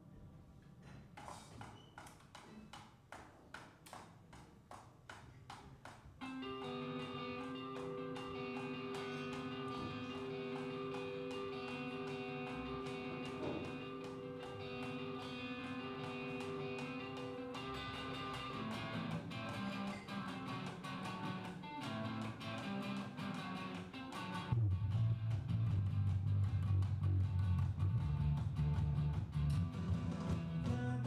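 Live band with electric and acoustic guitars playing a song's instrumental opening: softly picked guitar notes at first, then fuller playing with held notes coming in about six seconds in. Near twenty-five seconds the low end fills in and the music gets louder as the full band joins.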